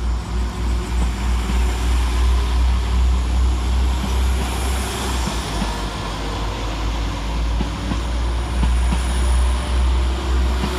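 West Midlands Railway diesel multiple unit passing close by, a steady heavy rumble of its engines and wheels, with short clicks as the wheels cross rail joints in the second half.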